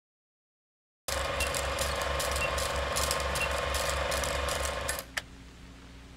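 Film projector running, a rapid mechanical clicking with a low pulse about four times a second and a short high beep once a second, as in a film-leader countdown. It starts abruptly about a second in, cuts off about five seconds in, and is followed by a single click and a low hum.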